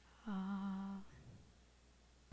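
A single short hummed note, held on one pitch for under a second, starting about a quarter of a second in.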